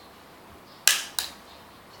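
Cooked mud crab shell cracking as its mouthparts are snapped off by hand: two sharp cracks about a third of a second apart, the first louder.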